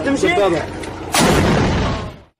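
A shoulder-fired rocket-propelled grenade launcher firing about a second in: a sudden loud blast with a rushing sound that holds for under a second and then dies away.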